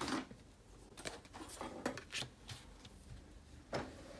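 Quiet desk handling: a few short, light taps and rustles from a marker and planner pages being moved on a wooden desk, with the strongest one just before the end.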